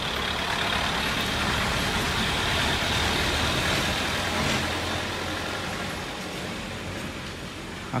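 A motor vehicle's engine running steadily with road noise, peaking around the middle and fading over the last few seconds, like a vehicle passing.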